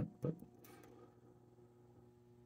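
A brief spoken word, then a faint, steady low electrical hum from the powered toy-train layout.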